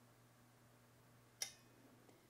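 Near silence: room tone with a faint steady low hum, and one short click about one and a half seconds in.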